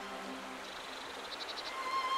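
Small waterfall running over stone steps: a steady rush of water. About one and a half seconds in comes a quick run of about five high chirps, and the orchestral score comes back in just before the end.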